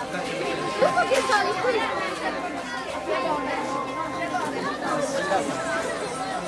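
Many people talking at once, a steady crowd chatter of overlapping voices, with a louder voice or two about a second in.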